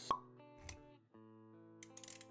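Intro music with a sharp pop sound effect just after the start and a low hit a little later. The music breaks off for a moment about a second in, then resumes.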